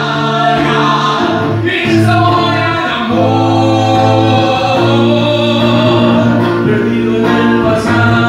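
Two male vocalists sing a Spanish-language love song as a duet over musical accompaniment, holding long notes.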